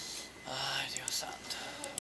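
A person speaking softly, close to a whisper, with no clear words, starting about half a second in.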